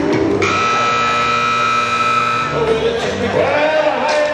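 Rodeo arena buzzer sounding one steady tone for about two seconds, starting suddenly half a second in, as the signal that the bronc ride's time is up.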